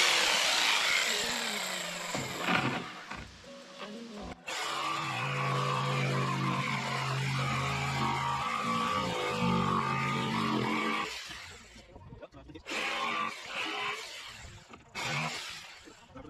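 Handheld electric power saw cutting through a wooden bed board, starting up loud and running in stretches, with a brief break about four seconds in and a longer drop near twelve seconds before a few short final bursts.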